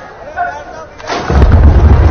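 Ceremonial artillery of a 21-gun salute firing as the flag is unfurled: one sharp report about a second in, followed by a loud, continuing low rumble.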